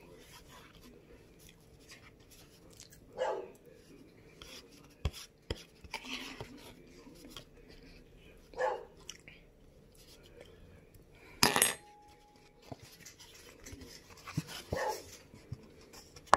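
Eating from a paper plate with a plastic fork: light clicks and scrapes, and one loud clatter near the middle. A short yelp-like call sounds every five or six seconds, three times.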